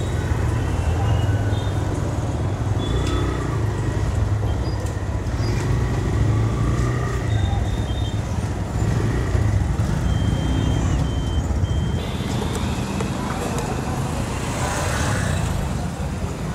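Small motorcycle and scooter engines running at idle and walking pace, a steady low rumble, with people talking in the background. A few short high electronic beeps sound, three in a row about ten seconds in.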